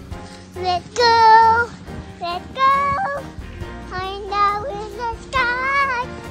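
A young girl singing a song in short phrases with held, wavering notes, over an instrumental backing track.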